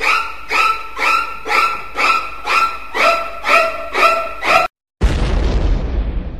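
Soundtrack music of short pitched hits, about two a second, that cuts off abruptly; after a brief gap a loud boom with a deep rumble starts and fades away.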